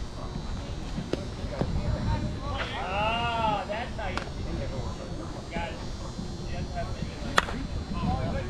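A softball bat hits a pitched ball once near the end: a single sharp crack, the loudest sound here. About three seconds in, a voice calls out in one long drawn-out shout, with scattered talk around it.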